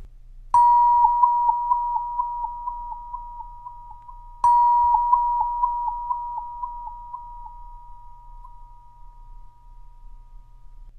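Wah-wah tube, an aluminium tube struck twice with a rubber mallet. Each strike rings a single high note that fades slowly, with a wavering wah pulsing about four times a second. It is picked up by a Uniwit K2 Mini dynamic microphone plugged straight into a camera.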